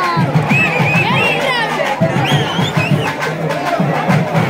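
Loud festival music with a rhythmic low beat, and a crowd's voices and shouts over it.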